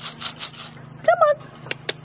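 Bird seed being shaken, a quick rhythmic rattle of several shakes a second that stops under a second in, followed near the end by two sharp clicks.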